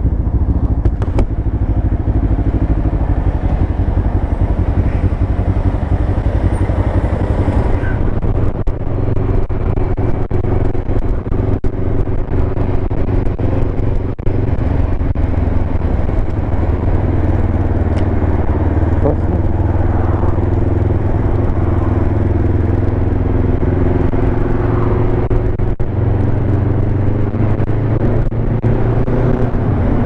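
Kawasaki ER-5 parallel-twin motorcycle engine running steadily while riding in traffic, with small shifts in pitch as the throttle changes.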